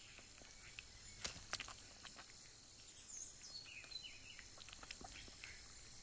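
Faint forest ambience: a steady high hiss, a few soft clicks a little over a second in, and brief high chirps about halfway through.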